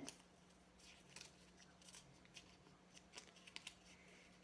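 Near silence with faint, scattered crinkles and ticks as a small folded piece of paper is picked at and unfolded by hand.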